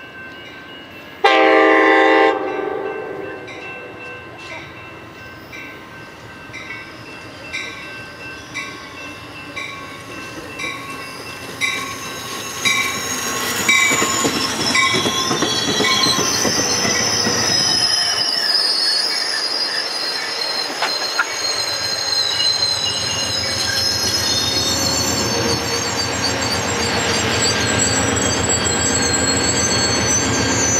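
Amtrak California bilevel passenger train arriving: one short horn blast about a second in, then a bell ringing at an even pace while the train draws near. The cars then roll past with wheel squeal and clatter, and near the end the diesel locomotive pushing at the rear passes with a low engine rumble.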